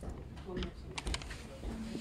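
Scattered light clicks and crinkles of the clear plastic sleeves around potted orchids as the plants are handled and brushed past, over a low shop hum.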